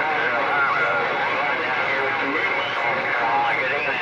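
Incoming transmission heard through a Galaxy radio's speaker: a distorted, hard-to-make-out voice over steady static hiss.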